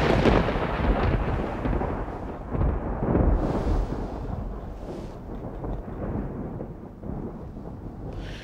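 A long roll of thunder over rain, a storm effect: loud at first, then fading slowly, with the rumble swelling again a couple of times.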